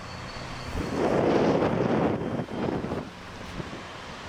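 Wind buffeting the microphone outdoors, a steady rushing noise that swells about a second in and eases off near the three-second mark.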